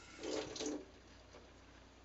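A brief splash of water in a sink, about half a second long, shortly after the start.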